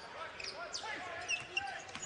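Live basketball game sound: a ball being dribbled on a hardwood court, with scattered voices from players and crowd echoing in the arena.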